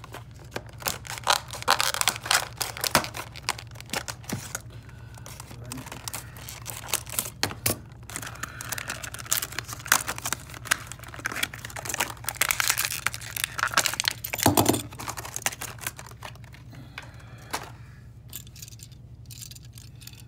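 Clear plastic blister packaging of a Greenlight 1:64 die-cast car being pried open and handled by hand. It gives dense crackling, crinkling and sharp snapping clicks, which thin out over the last few seconds.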